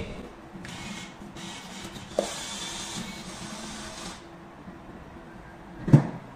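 Vending machine banknote acceptor whirring as it draws in a paper note, a mechanical run of a few seconds, followed near the end by a single thump.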